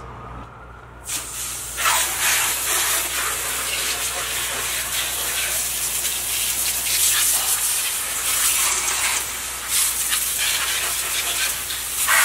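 Garden hose spray wand jetting water into a Vespa scooter's open engine bay, rinsing the engine and the plastic well around it; the steady spray starts about a second in and varies a little as the jet is moved around.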